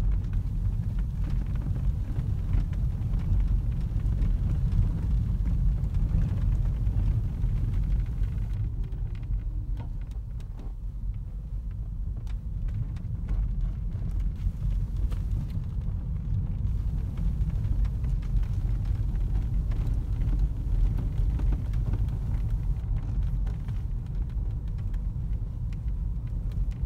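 Low, steady cabin rumble of a Toyota Auris Hybrid on the move, heard from inside the car: road and drivetrain noise, easing a little about ten seconds in.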